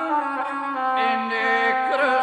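Gusle, the single-string bowed Balkan folk fiddle, playing an ornamented melody that accompanies a South Slavic epic song.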